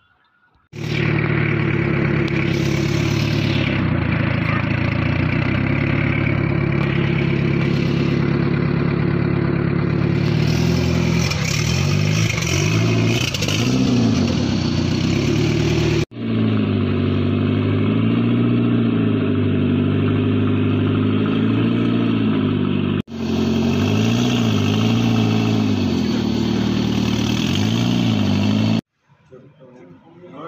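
Toyota 4E-FTE turbocharged four-cylinder engine, swapped into a Daihatsu Charade, running loud at a steady idle, then revved repeatedly in throttle blips. The sound breaks off abruptly twice.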